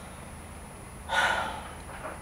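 A single sharp gasp of shock, about a second in, lasting about half a second.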